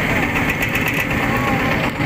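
A river boat's motor running steadily while under way, with water rushing past the hull.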